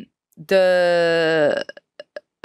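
Speech only: one long, drawn-out hesitation word, "the…", held for about a second after a short pause.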